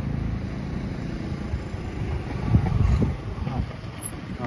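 Wind buffeting the microphone as a low, rumbling noise, gusting louder about two and a half seconds in.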